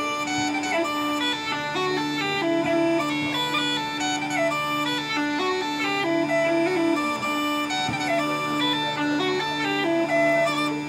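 Bagpipes playing a tune: a melody of stepping notes over a steady drone.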